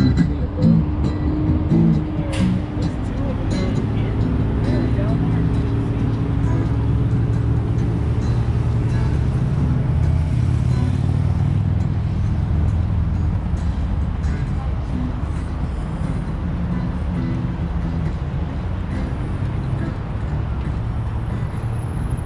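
Steady city street traffic, cars passing on a multi-lane road, heard from the sidewalk. Plucked guitar music trails off in the first few seconds, and passersby talk faintly.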